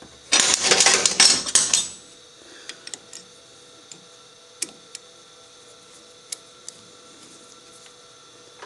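Small metal tools clattering together for about a second and a half as an allen key is picked out, then a few light metallic clicks as the hex key is fitted into the centre screw of a shop-made expanding mandrel on the lathe.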